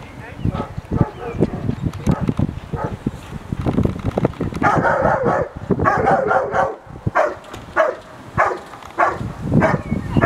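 German Shepherd barking at the hide in a protection-sport hold and bark, guarding the helper inside. The barks start about halfway through, at first in a quick run and then settling into a steady rhythm of almost two barks a second.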